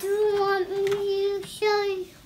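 A young child singing wordlessly, holding one long steady note for about a second and a half, then a shorter note near the end.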